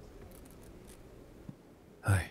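Faint rustling of clothing being handled and hung on a hanger in a wardrobe, with a couple of soft knocks, one at the start and one about one and a half seconds in.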